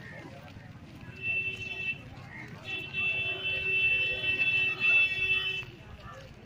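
A vehicle horn giving two long steady blasts, the first about a second long, the second about three seconds, over the background noise of a crowd moving on foot.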